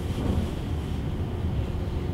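Steady low rumble of room background noise, with no speech over it.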